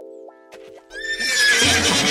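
Quiet cartoon background music of short repeated notes over a held chord, then about a second in a louder horse whinny sound effect.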